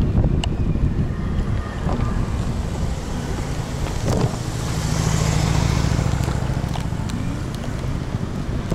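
Wind buffeting the microphone of a dashcam on a moving electric kick scooter, over steady low road rumble with a few light clicks. A low hum swells for a few seconds past the middle.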